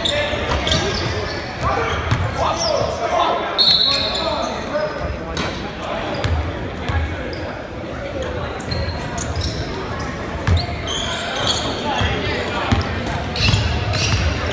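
Basketball game sound in a school gym: a ball bouncing on the hardwood floor, with players' and spectators' voices carrying through the hall and a few short high squeaks.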